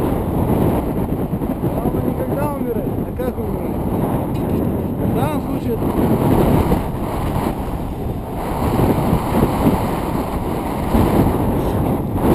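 Wind buffeting a chest-mounted action camera's microphone high on an exposed chimney top: a loud, steady low rumble, with faint voices under it.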